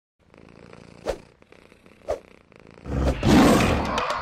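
Two short soft thumps about a second apart, then a tiger's roar swelling in just before three seconds and loudest about half a second later.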